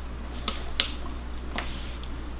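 Three small sharp clicks, two close together about half a second in and one more near the end, as a female jumper-cable connector is handled and pushed onto a Raspberry Pi's GPIO header pin.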